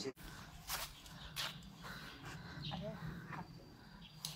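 Quiet footsteps on a concrete yard, a few steps spaced well apart, with faint voices in the background.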